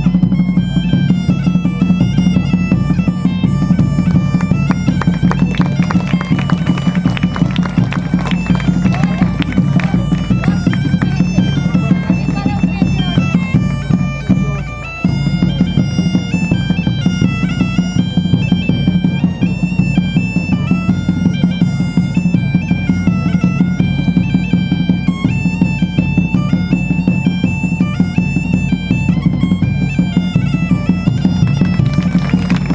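Live medieval-style music: bagpipes play a melody over their steady drone while large drums beat a regular rhythm. The music dips briefly about halfway, then carries on.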